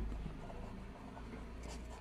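Pen writing on paper: faint scratching as a short word is written.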